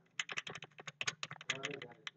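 A rapid run of faint computer-keyboard key presses, about ten clicks a second, as the lecture slides are paged through. A brief low murmur of voice comes in near the end.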